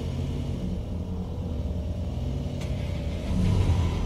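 A van's engine running with a low, steady rumble in a drama's sound effects, growing louder about three and a half seconds in.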